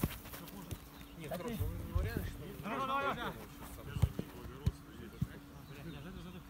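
Faint, distant voices of footballers calling out during training, with a few dull thuds of footballs being kicked.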